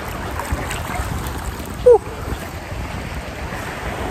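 Sea water sloshing and small waves washing around a person standing in the shallows, close to the microphone. A short breathy "whew" about two seconds in.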